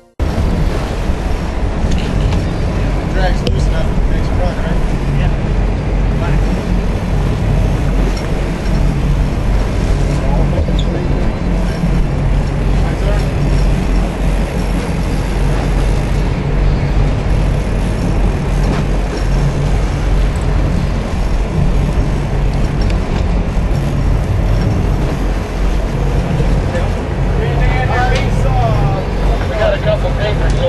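Sportfishing boat's engines running steadily on deck, with wind and sea noise and scattered voices of the crew.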